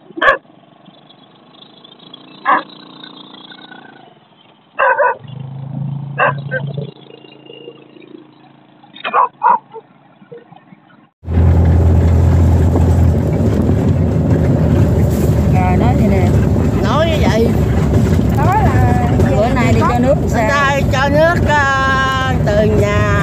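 A few short, sharp sounds over a quiet background, then an abrupt cut about halfway through to a loud, steady engine running, with people talking over it.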